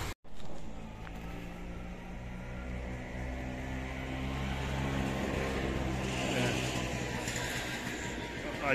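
An engine idling steadily with a low, even hum that grows a little louder through the middle. The sound cuts out for a moment at the very start.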